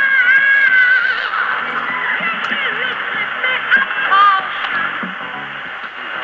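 Music from a shortwave AM broadcast playing through a JRC NRD-93 communications receiver. A wavering melody line runs over the backing, and the sound is thin and muffled, with nothing above about 4 kHz.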